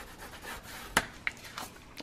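Bone folder rubbing along the glued edge of a thin cardstock envelope, a faint scraping of paper, with a sharp click about a second in.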